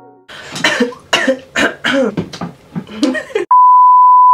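Short bursts of a person's voice making sounds without words, then, about three and a half seconds in, a loud steady single-pitch beep: the test tone that goes with TV colour bars.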